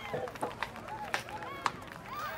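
Footsteps of a few people walking, with a few sharp clicks, over a faint murmur of background voices.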